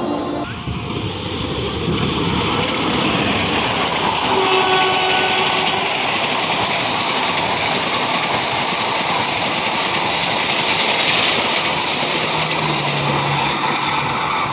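Passenger train of economy coaches passing close by at speed: a steady rush of wheels on rails and rolling coaches. It starts suddenly about half a second in and grows louder over the next two seconds.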